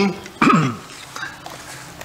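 A man clears his throat once into a microphone, about half a second in: a short sound that falls in pitch.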